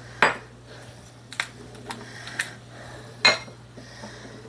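Sharp clicks and knocks of kitchen containers being handled and set down on a marble countertop, five in all, the loudest just after the start and about three seconds in. Among them is a plastic bottle cap being put down on the counter.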